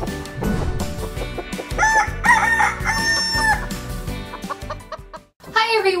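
Chicken clucks and a held rooster-style crow over an upbeat intro jingle, the calls bunched in the middle of the clip.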